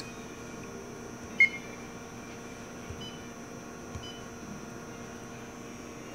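Short beep from a press brake CNC controller's touchscreen about a second and a half in, then two faint, shorter beeps a second apart. A steady hum with a faint high whine runs underneath.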